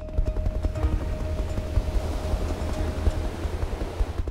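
Helicopter rotor and wind noise, a dense fluttering low rumble, under background music with a steady held note that stops about three seconds in.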